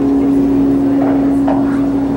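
Live rock band holding one long, steady chord, a sustained drone with a wash of cymbals over it.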